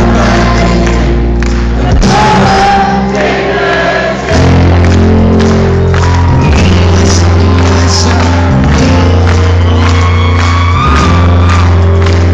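A rock band playing live in a concert hall: a male lead singer over strong bass and a steady drum beat, with many voices in the sound.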